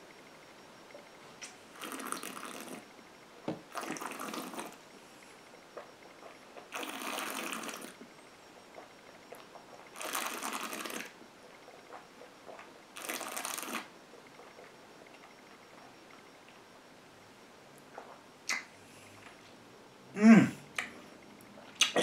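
A man breathing out through his nose in about five separate breaths, each roughly a second long, while holding and working a sip of whisky in his mouth. A short murmured "mm" follows near the end.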